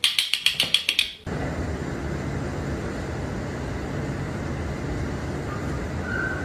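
Metal kitchen tongs snapped open and shut repeatedly, about eight sharp clicks in just over a second. Then a steady, even rushing noise takes over and lasts to the end.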